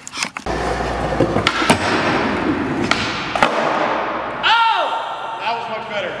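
Skateboard wheels rolling on a concrete floor, with a few sharp clacks of the board. About four and a half seconds in, a man gives a short shout.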